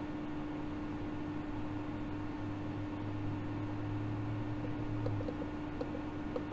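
Steady machine hum, with a lower drone that swells and then cuts off about five seconds in. A few faint clicks come near the end.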